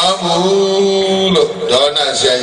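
Elderly Buddhist monk intoning into a microphone, holding one long, steady chanted note for more than a second before his voice moves on in shorter, changing syllables.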